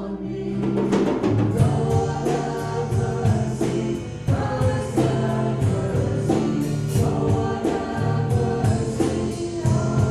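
A congregation and the singers at the front singing a hymn together, with instrumental accompaniment. Sustained notes change every second or so over a steady beat of light percussive hits.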